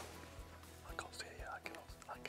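Quiet whispered speech, a hunter whispering during a stalk, over soft background music.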